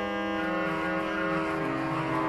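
Historic 1772 Jean-Baptiste Micot pipe organ playing French Baroque music: sustained chords over a bass line that steps down in pitch.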